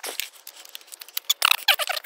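Two folding electric scooters, an Anyhill UM2 and UM1, being folded down: a quick run of sharp clicks and small clanks from the stem latches and hinges, thickest near the end.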